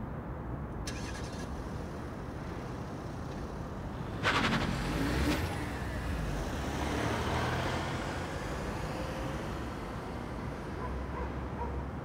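A car driving past: its sound comes in suddenly about four seconds in, swells and then fades away over several seconds, over a steady low rumble.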